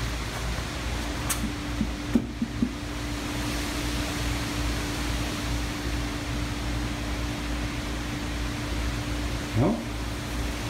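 Steady hum and hiss of a running air conditioner, with a low steady tone under it and a few faint clicks about two seconds in.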